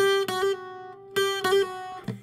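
Acoustic guitar playing a short lead phrase of single notes on the high E string. The same high note is struck in two quick groups about a second apart, ornamented with a hammer-on slur between the third and second frets.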